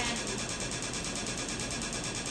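Excimer laser firing a rapid, steady train of clicking pulses during a wavefront-guided LASIK ablation of the cornea.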